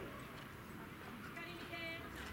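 Faint, distant voices of people calling out, with one short held call near the end.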